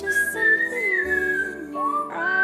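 A person whistling a melody over an electronic backing track with bass and chords. One clear, pure whistled note rises slightly and falls back, then drops to a lower note near the end.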